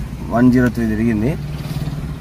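A man's voice briefly, then a car engine idling steadily as a low, even hum, the car parked and running on CNG.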